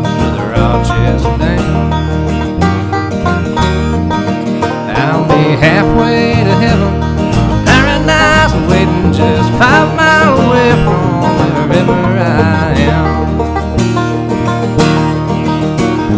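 Acoustic guitar strummed and picked through an instrumental break in a country-folk song.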